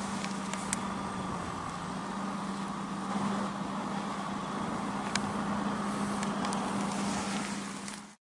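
A steady low engine-like hum over a background of noise, with a few faint clicks; it stops abruptly at the end.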